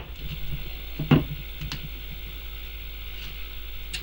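Steady low electrical hum with a faint click from small metal parts as a rectifier pack is worked onto an alternator stator's terminals.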